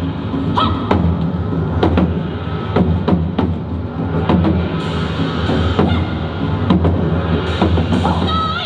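Percussion music: sharp, irregular strikes on a large barrel drum, about one or two a second, over a steady low drone.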